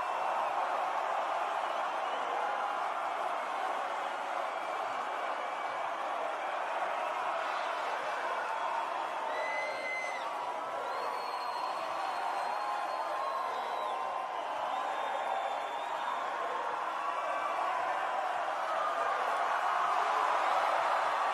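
Huge festival crowd cheering and shouting steadily between songs, with no music playing. A few shrill, high-pitched calls stand out above the crowd around the middle.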